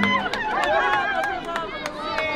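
Crowd noise: several voices calling and talking over each other, with scattered sharp clicks.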